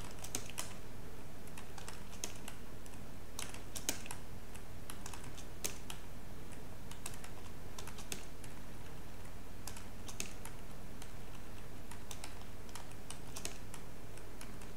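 Computer keyboard keystrokes, irregular scattered clicks with short pauses between, as code is edited line by line. A steady low electrical hum runs underneath.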